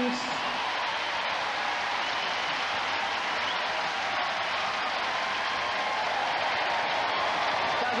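Studio audience applauding and cheering, a steady, dense wash of clapping and crowd noise.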